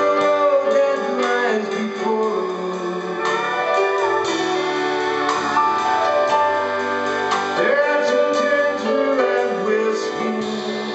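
Live country band playing an instrumental passage: a pedal steel guitar carries the melody in gliding, bending notes over sustained chords and a steady bass line.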